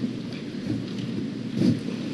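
Low, steady rumbling room noise picked up by the courtroom's microphones, with a couple of faint soft swells.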